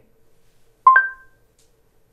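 Google Home Hub smart display giving a short two-note rising chime about a second in. The chime acknowledges a spoken "start day" routine command.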